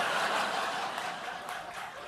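Studio audience laughing after a punchline, the laughter fading over the two seconds.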